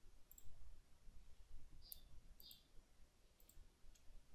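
A few faint computer mouse clicks, short and spaced irregularly, over a low steady room hum.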